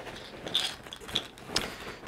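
Camera backpack being handled and folded shut: fabric rustling and scraping, with a few short louder scuffs.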